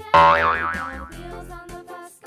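Cartoon "boing" sound effect: a sudden springy tone that wobbles up and down in pitch and fades over about a second, over light children's background music.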